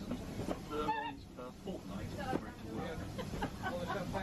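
Indistinct voices with honk-like pitched calls over the steady low rumble of a moving train carriage.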